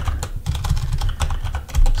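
A quick run of keystrokes on a computer keyboard, with a heavier key thump near the end.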